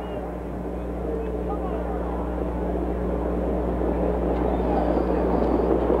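Harness-racing start: the engine of the mobile starting-gate car and crowd chatter grow steadily louder as the gate leads the field of pacers toward the start, over a steady mains hum on the recording.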